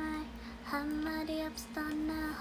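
A young woman singing softly, holding level notes of about half a second to a second with short breaks between, over a steady low hum.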